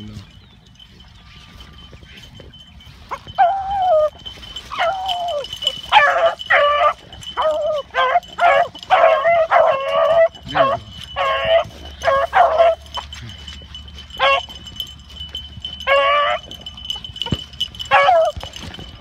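Beagles baying on a rabbit's scent trail: after a few quiet seconds, a first drawn-out falling bawl, then a run of short, high chop-mouth yelps, some overlapping, most thickly between about six and thirteen seconds, with a last few calls near the end.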